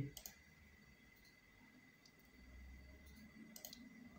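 Near silence with a few faint computer-mouse clicks, one just after the start and a couple near the end, over a faint steady high tone.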